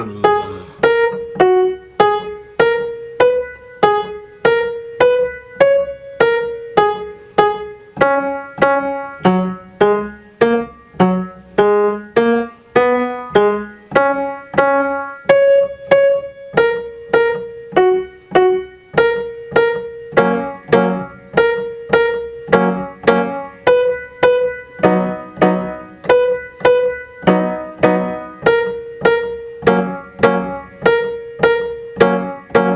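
Grand piano playing a steady stream of even notes at a slow practice tempo, the right hand high over a lower left-hand part, each stroke sounding and dying away. A metronome ticks the eighth-note beat at 50 under it.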